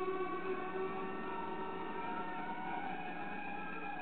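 Several sustained howling tones sounding at once over a faint hiss, each drifting slowly up or down in pitch. This is typical of audio feedback from streaming software picking up its own output.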